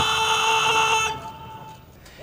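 A bugle holds a long note of a salute call, ending about a second in and fading out in echo.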